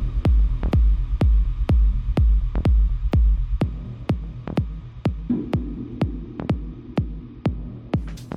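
Techno mixed live by a DJ: a steady four-on-the-floor kick drum at about two beats a second. A deep bass runs under it for the first few seconds, then drops away, leaving the bare kick.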